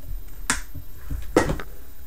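Two sharp plastic clicks about a second apart, with low rumbling handling noise close to the microphone, as a microphone pop filter is handled and set back on its stand.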